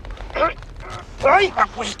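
A man's strained shouts and cries while being grabbed by the throat, in two bursts: a short one about half a second in and a longer one in the second half.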